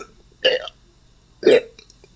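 A person's voice making two short, abrupt non-word sounds about a second apart.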